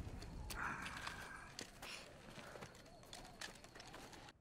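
Faint episode soundtrack: scuffing and crunching on dry desert dirt and gravel, with scattered small clicks, as a man crawls along the ground.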